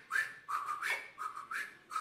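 Vocal sound effects: a quick run of short whistled, squeaky syllables with hissy onsets, about three or four a second, the pitch stepping up and down between two notes.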